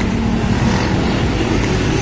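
Street traffic: motor vehicles running, a steady low engine hum under road noise.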